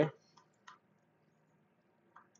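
Two faint computer keyboard keystrokes, about a third and two-thirds of a second in, as backspace deletes letters in a code editor; then near silence.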